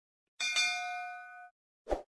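A bell-like notification chime sound effect: one struck note with several overtones, starting about half a second in and cutting off a second later. Near the end, a short soft pop.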